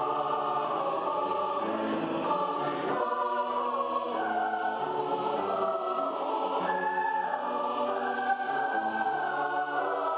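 A choir singing in held chords that change every second or so.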